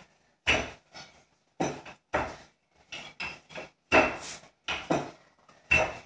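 Wooden rolling pin knocking and rolling against a floured board as dough is rolled out flat, about a dozen irregular knocks.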